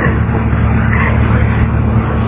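A steady low mechanical hum with a continuous hiss.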